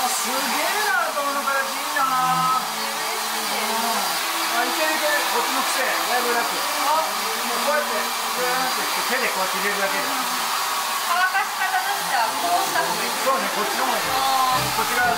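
Handheld hair dryer blowing steadily while a stylist blow-dries short hair, with a faint steady high whine in the airflow noise.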